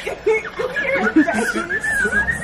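Women laughing, short chuckles and snickers. About halfway through, a thin, steady, high whistle-like tone comes in and holds.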